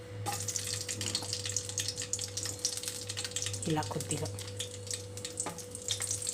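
Green chillies sizzling and crackling in hot oil in an aluminium kadai, starting suddenly as they hit the oil and continuing steadily.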